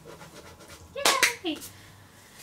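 Faint scratching at a lottery scratch-off ticket, then a woman's short, excited "Yay!" about a second in.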